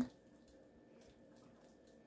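Very quiet: a spatula softly stirring thick gumbo in a pot, with a few faint soft ticks over a steady faint hum.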